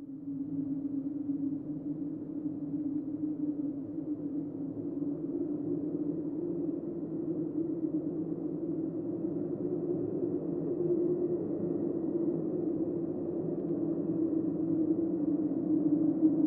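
A steady, low ambient music drone. It fades in at the start and slowly grows louder toward the end.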